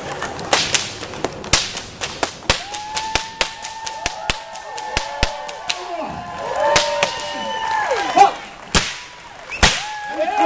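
A whip being cracked again and again by a stage performer: more than a dozen sharp, loud cracks at irregular intervals, with overlapping drawn-out voices from the crowd through the middle.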